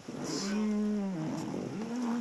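A person's long, drawn-out wordless call, held on one pitch for about a second and then dropping off. A second held call begins near the end.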